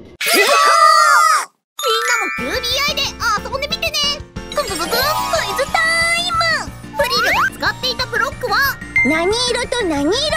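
High-pitched cartoon character voices chattering over bright children's background music with chiming jingles. After a brief silent break about a second and a half in, the music comes in.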